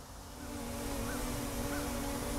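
Small quadcopter's propellers and motors humming steadily as it flies under autonomous control, growing somewhat louder. A faint chirp repeats about every half second behind it.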